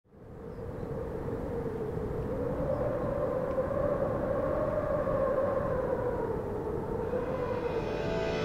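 A noisy, droning rush with a slowly wavering pitch, fading in from silence at the start.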